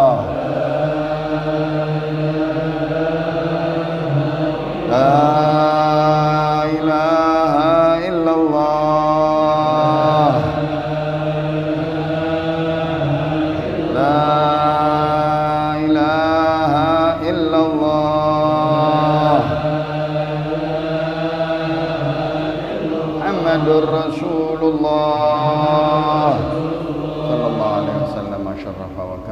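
Men chanting Islamic dhikr: long held melodic notes with ornamented turns, swelling in three phrases.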